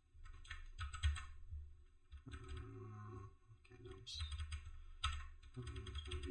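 Typing on a computer keyboard in irregular clusters of keystrokes as a command is entered.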